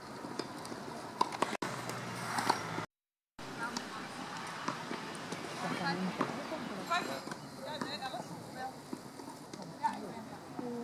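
Tennis court ambience: indistinct voices, with occasional sharp knocks of tennis balls being struck and bounced. There is a brief dead silence about three seconds in.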